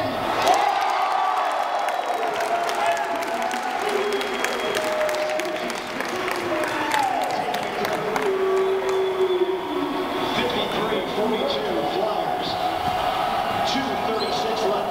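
Crowd of students chattering and calling out, with some cheering mixed in.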